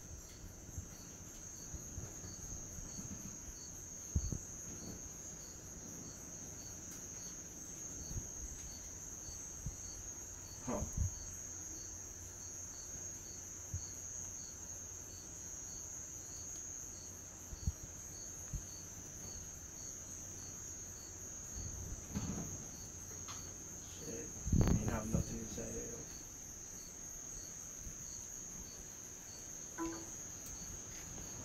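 Crickets chirping, a steady high trill with a second, regularly pulsed chirp beneath it. A few soft knocks and bumps come through as well, the loudest cluster about 25 seconds in.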